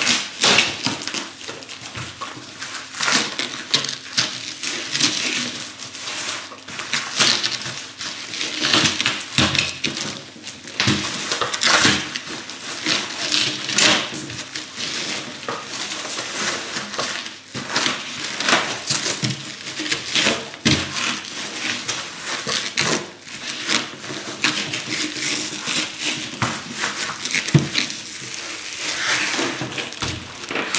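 Plastic stretch film and bubble wrap rustling and crinkling in irregular bursts as they are wound around and pressed onto a package by hand.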